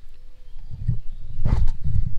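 Wind buffeting an action camera's microphone: a low, uneven rumble that grows stronger about halfway in, with a couple of short knocks around one and a half seconds.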